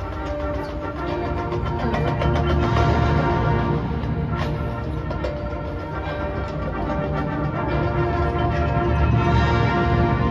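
Marching band playing long held chords over a strong low end, swelling louder about two seconds in and again near the end, heard from high in the stands of an indoor stadium.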